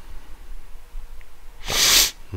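A short, sharp breath through the nose into a close microphone near the end, over a faint low hum.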